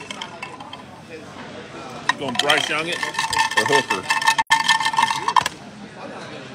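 Dice rattling as they are shaken in a dice cup, over the chatter of voices in a large, busy hall.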